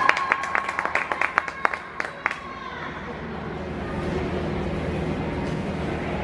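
Quick clapping close by, several hands at about six claps a second, dying out a little over two seconds in. It gives way to the steady hum and murmur of the ice rink hall.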